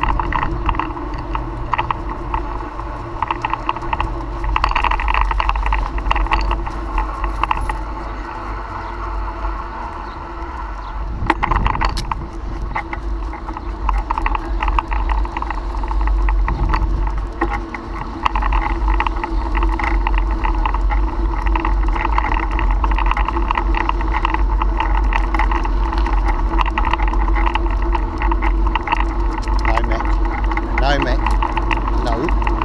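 A bicycle ridden over asphalt and footpath, heard through a handlebar-mounted action camera: a steady low wind rumble on the microphone, tyre noise, and constant small rattles and clicks, with a louder knock about eleven seconds in.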